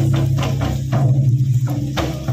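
Hand-played mandar, two-headed barrel drums, beating a quick, steady dance rhythm with a deep, booming low end.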